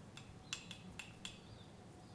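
Light clinks of a paintbrush tapping and stirring in a porcelain colour dish while rouge and indigo are mixed into purple: about five quick, faint ringing clicks in the first second and a half.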